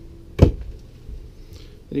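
A single sharp knock about half a second in, a cabinet door in an RV interior being shut.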